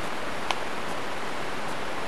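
Steady hiss of a webcam microphone's noise floor, with one short click about half a second in.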